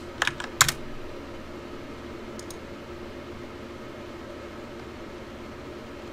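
Keystrokes on a computer keyboard: a quick run of sharp clacks in the first second and one more about two and a half seconds in, over a steady low hum.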